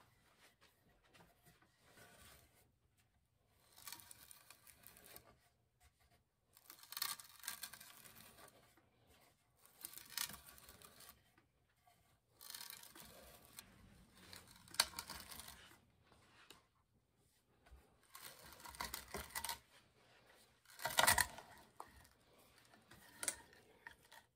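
A 1 1/2-inch hand auger with freshly sharpened cutters boring into a wooden block, turned stroke by stroke: short bursts of wood cutting and tearing about every two to three seconds, with quiet pauses between.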